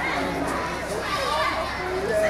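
Many children's voices talking and calling out at once, with adult voices mixed in, a steady overlapping chatter with no one voice standing out.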